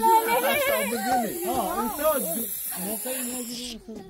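Hand-held sparkler hissing under a group's excited, rising-and-falling voices. The hiss cuts off suddenly near the end.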